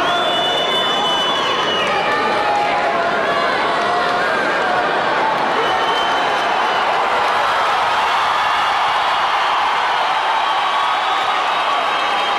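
Arena crowd cheering and shouting on the fighters: a steady, loud din of many voices, women's voices prominent among them.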